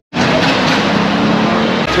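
City street traffic noise, with a vehicle engine running and giving a steady low hum. It cuts in abruptly after a brief dropout.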